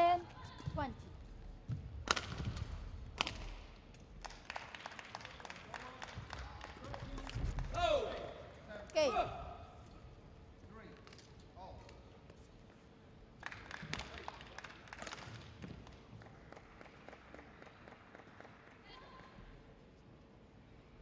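Badminton rally in a large hall: sharp racket strikes on the shuttlecock and quick clicks of play, with voices shouting about eight seconds in, then more knocks and low hall noise.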